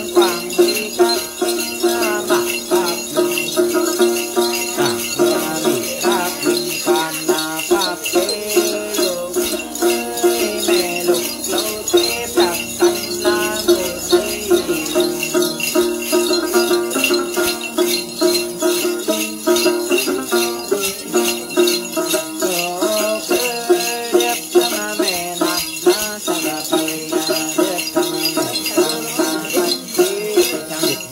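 Two bundles of metal jingle chains (xóc nhạc) shaken in a steady, continuous rhythm, the jingling accompaniment of a Tày-Nùng Then ritual song, with a wavering chanted voice over it.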